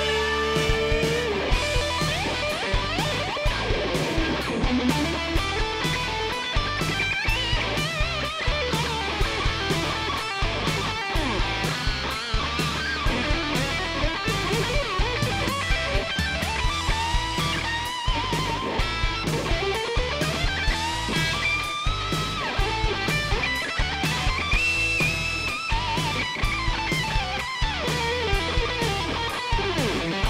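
Electric guitar solo played fast and distorted over a backing with a steady beat and bass. Several deep pitch dives and swoops back up run through it.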